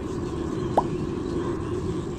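Steady low outdoor background hum picked up by a nest camera microphone, with one very short, sharp rising blip a little under a second in.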